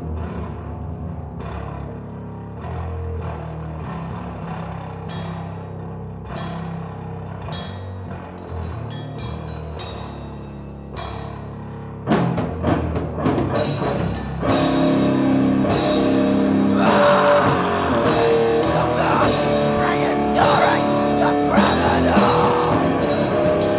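Rock song with guitar and drum kit. It opens as a quieter, sustained guitar passage, and drum and cymbal hits creep in about a quarter of the way through. About halfway through the full band comes in suddenly and much louder.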